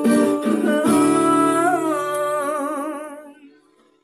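Acoustic guitar strummed twice as a male voice holds a long final note with vibrato, closing the song. The guitar rings on under the voice and both die away about three and a half seconds in.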